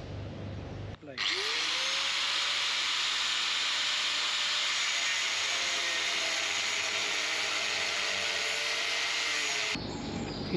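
Angle grinder cutting through a metal propeller shaft: it starts abruptly about a second in, grinds steadily for about nine seconds and stops shortly before the end.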